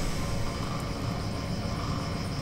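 Steady low rumble of outdoor background noise with no distinct event.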